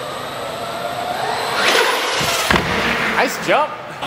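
RC monster truck motor whining and rising in pitch as the truck speeds up, then a sharp thump about two and a half seconds in as the truck hits something.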